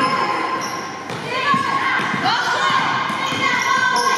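Youth basketball game in a large gym: a basketball bouncing on the court and sneakers squeaking in short high chirps, over echoing voices of players and spectators.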